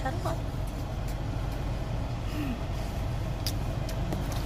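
Car engine idling, heard inside the cabin as a steady low rumble, with a short bit of voice just after the start.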